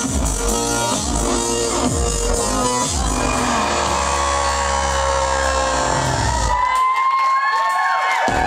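Live industrial electronic (EBM) band music with a steady beat that gives way about three seconds in to a held synth drone. Near the end the bass cuts out and the crowd cheers and whistles as the song finishes.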